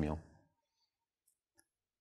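The last of a man's spoken word fading out, then a pause of near silence broken by a couple of faint, very short clicks.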